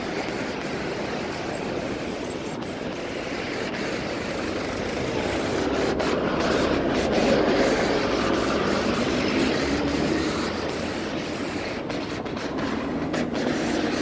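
Steady rumble of passing road traffic, trucks and cars, swelling to its loudest about halfway through.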